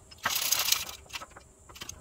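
Small steel parts (a socket and an LS rocker arm) being handled and set on a shop press bed: a brief metallic rattle about a quarter second in, then a few light clicks.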